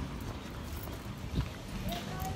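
Footsteps and rumbling handling noise from a phone carried by someone walking on a street, with one short thump about one and a half seconds in.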